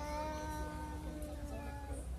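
A playground merry-go-round's metal centre pivot squealing as it turns: a long, steady, high squeak made of several tones that stops just before the end.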